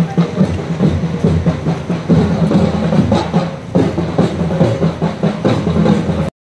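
Drums beaten in a fast, dense rhythm over a steady low drone.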